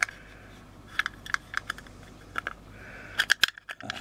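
Clear hard-plastic lens-filter case clicking and tapping as it is handled and turned over in the hands: a string of sharp light clicks about every half second, with faint scraping between and a quick cluster of clicks near the end.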